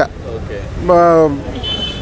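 A man's voice in a pause between sentences: one drawn-out syllable about a second in, over steady low background noise, with a brief high steady tone near the end.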